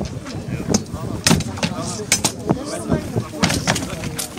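Reenactment combat blows striking wooden round shields: about eight sharp knocks, several coming in quick pairs and threes, over crowd chatter.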